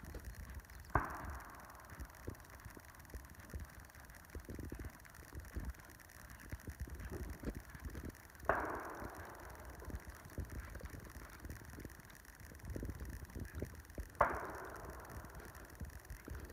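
A horse's hooves thudding irregularly on a sand arena surface as it trots. Three sudden sharper sounds stand out, about a second in, just past the middle and near the end, each fading away over a second or so.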